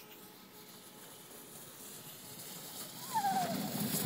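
Inflatable snow tube sliding down a packed-snow run toward the microphone, a hiss of snow that grows steadily louder as it approaches. About three seconds in, the rider gives a short cry that falls in pitch.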